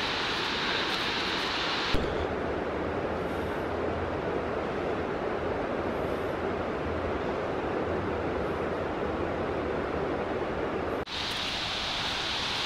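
A steady rushing noise outdoors with a low rumble underneath. It changes abruptly about two seconds in, becoming duller, and switches back shortly before the end.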